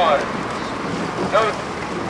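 Wind buffeting the microphone over open river water, a steady rushing noise. Two short calls falling in pitch cut through it, one right at the start and one about a second and a half in.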